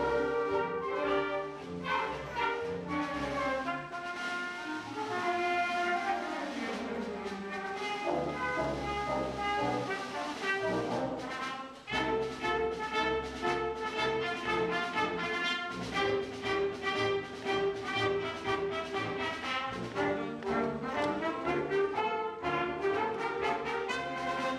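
High school symphonic band (concert wind band) playing, brass to the fore, with a brief break in the sound about halfway through.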